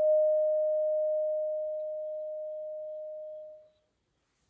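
Tibetan singing bowl, struck with a wooden mallet, ringing out on one steady tone that slowly dies away and stops shortly before the end.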